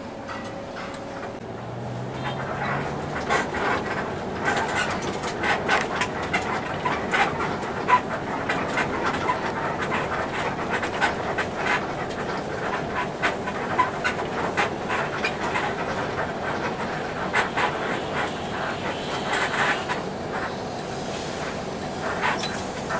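Inside a bus cabin, with many irregular rattles and clicks over the bus's engine running; the engine note rises briefly about two seconds in.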